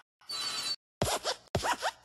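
Sound effects of the hopping Luxo Jr. desk lamp in the Pixar logo: three short creaky, squeaky bursts, like a metal spring and hinges, one for each hop.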